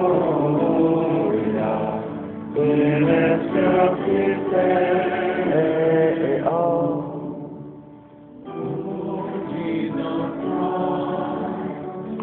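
Several voices singing together in long held notes, a sacred chant or hymn. A short break between phrases comes about seven seconds in before the singing resumes.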